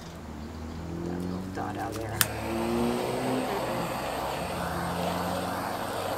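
A distant motor drone whose pitch slowly shifts, as of something passing. A sharp click about two seconds in, and a hiss joins from about halfway.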